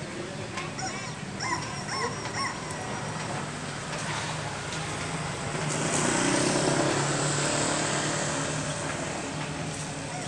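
A car driving past on the street, its engine and tyre noise swelling to a peak a little past the middle and fading away.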